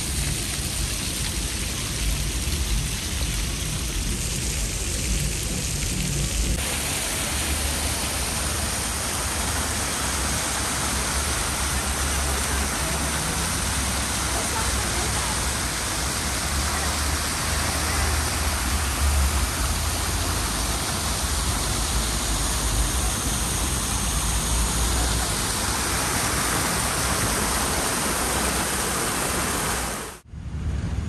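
Fountain jets of water splashing steadily into shallow stone pools, a constant hiss of falling water. The sound becomes fuller about six seconds in.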